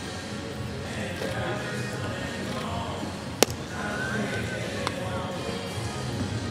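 Background music with outdoor field sound. About three and a half seconds in, a single sharp crack of a bat hitting a baseball, the loudest sound here; a fainter click follows about a second and a half later.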